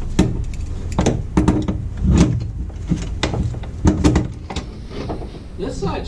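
Irregular clicks and knocks, about a dozen, from metal parts and tools being handled at a Jeep's transfer case shift linkage, over a low rumble.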